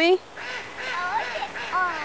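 A woman's loud call cuts off just after the start. A young child's voice follows, softer, high and whiny, in sulky protest.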